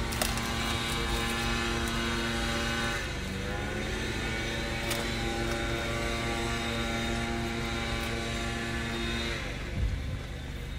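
Steady engine drone with a hum in it. The pitch dips slightly about three seconds in, and the drone stops shortly before the end.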